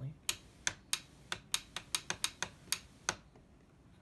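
A quick, irregular run of about a dozen sharp clicks, which stop a little after three seconds in, staged as a mystery noise in the dark.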